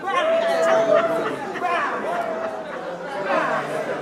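Several women's voices talking and calling out over each other in a group, one voice holding a long note in the first second.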